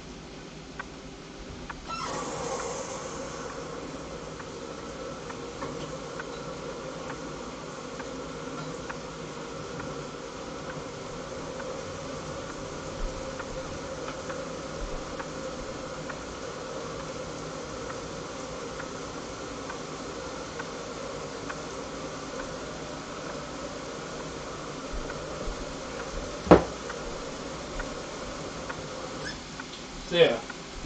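Chicken and vegetables frying in pans on a hot electric stove burner: a steady sizzle that picks up about two seconds in. A single sharp knock comes near the end.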